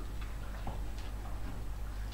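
Smooth collie puppies' claws clicking irregularly on a hard, smooth floor as they walk about, over a low steady hum.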